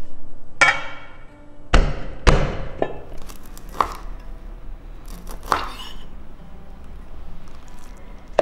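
Kitchen knife chopping garlic and small red chilies on a wooden cutting board: about half a dozen sharp, irregularly spaced chops, the loudest about two seconds in.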